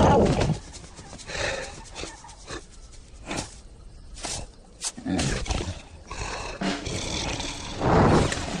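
Cartoon sound effects: a loud, wavering roar from the cartoon lion breaks off about half a second in. Quieter scattered clicks and short vocal sounds follow, with a brief louder burst a little after the midpoint.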